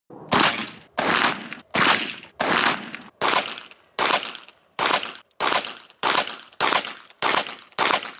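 A pistol firing a steady string of about a dozen shots, roughly one every two-thirds of a second, each shot ringing out briefly before the next.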